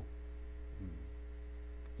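Steady electrical mains hum in the recording, low and continuous, with a brief faint vocal sound just under a second in.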